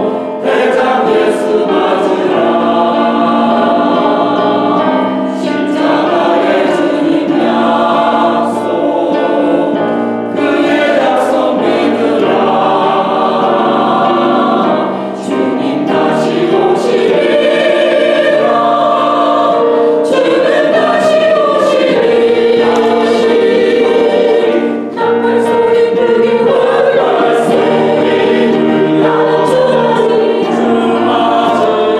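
Mixed church choir, women's and men's voices, singing a hymn in sustained harmony, phrase after phrase with a few brief dips between phrases.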